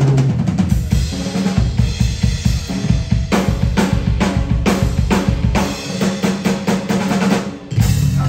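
Live drum kit played busily, with rapid snare and bass-drum hits and rolls and bright cymbal strikes in the middle, over a sustained low note. The drumming thins briefly near the end before the full band comes back in.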